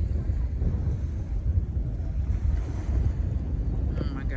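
Wind blowing across a phone's microphone by the water, a steady low buffeting.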